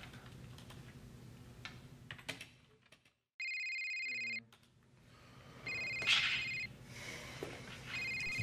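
Computer keyboard typing for about two seconds, then a phone ringing with an electronic ringtone: two rings of about a second each, a little over two seconds apart, with a third starting at the very end.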